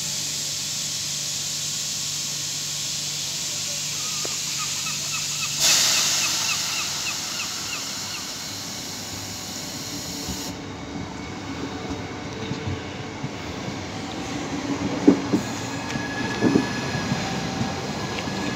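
Southeastern Class 395 'Javelin' high-speed electric multiple unit at a platform: a steady hiss while it stands, then a run of short door-warning beeps and a sudden louder burst of air hiss as the doors close. About ten seconds in the hiss stops, and the train pulls away with a low rumble, a faint whine and several knocks from the wheels.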